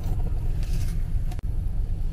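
Steady low rumble of a taxi heard from inside its cabin, with a single faint click about one and a half seconds in.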